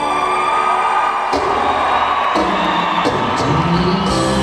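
A live rock band plays a slow song on electric guitar and drums, heard through an audience camcorder's microphone in an arena, with crowd cheering and a whoop mixed in. Sharp drum hits come in about a second in.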